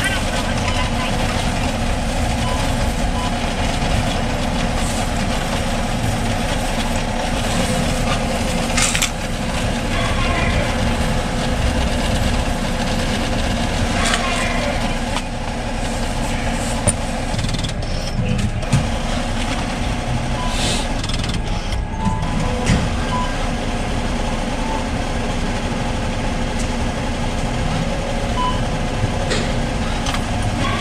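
Bank ATM's coin-counting mechanism running as it counts deposited coins: a steady mechanical whir with scattered small clicks and ticks.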